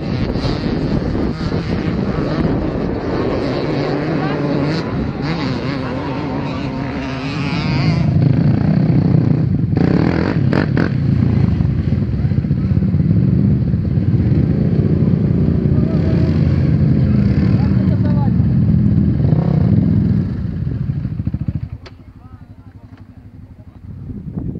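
A motorcycle engine running on the track, then several quad bike engines idling and revving together at a start line, louder from about a third of the way in. The engine sound drops away sharply near the end.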